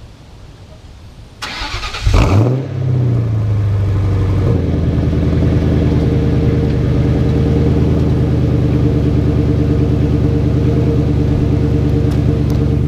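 A New Edge Ford Mustang GT's 4.6-litre V8 starting, heard at the tailpipes through an aftermarket SLP exhaust. The starter cranks briefly about a second and a half in, then the engine catches about two seconds in with a quick rise in revs. The revs drop back within a couple of seconds and settle into a steady idle.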